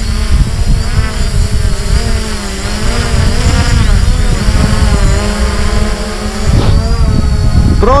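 Hubsan Zino quadcopter hovering close overhead: the loud buzzing whine of its motors and propellers, its pitch wavering up and down as it holds position, over a rough low rumble.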